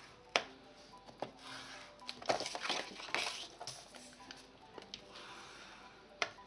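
Kraft cardstock being scored on a Scor-Pal scoring board: a sharp tap, then a few short scraping strokes of the scoring tool along the board's groove, with paper being handled.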